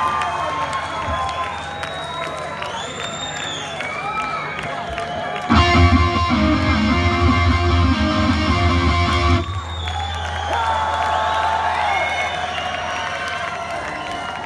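Rock concert crowd cheering and shouting over a steady low hum from the stage amplification. About five seconds in, a distorted electric guitar chord rings out loud through the PA for about four seconds, then is cut off suddenly.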